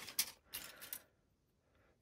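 Light clicks and rattle of plastic model-kit sprues being handled and knocked together, lasting about a second.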